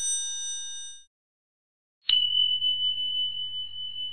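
Outro sound-effect bell chimes: a bright, many-toned ding rings out and fades within about a second. After a short silence, a second chime is struck about two seconds in and leaves a single high tone ringing on with a wavering level.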